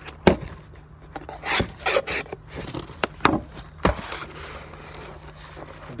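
A cardboard mailer box being handled and opened: cardboard scraping and rubbing, with several sharp knocks and taps in the first four seconds and quieter handling after.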